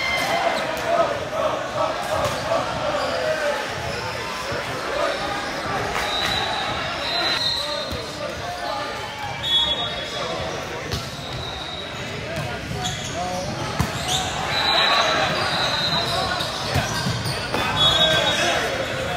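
Busy sports-hall hubbub: many overlapping voices of players and spectators, with balls bouncing on the hardwood court as scattered sharp knocks and a few brief high-pitched squeaks.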